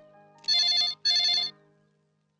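Bedside push-button landline telephone ringing with an electronic trill: two short rings about half a second long, one right after the other.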